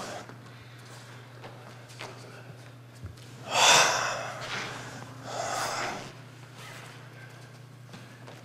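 A person's breath, two forceful exhalations about three and a half and five and a half seconds in, the first louder, over a steady low hum.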